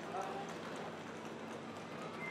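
Railway platform ambience: a steady wash of background noise with brief, indistinct voices and the footsteps of passengers walking past.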